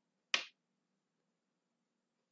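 A single short, sharp click about a third of a second in, against near silence.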